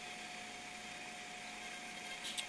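Quiet steady background hiss with a faint, thin, steady tone running under it: room tone.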